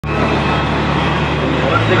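Steady low engine hum and road noise heard inside a vehicle's cabin. The hum shifts to a different pitch once near the end.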